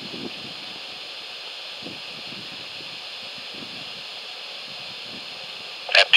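Steady background hiss with faint, irregular wind rumble on the microphone; the rocket's engines have not yet ignited.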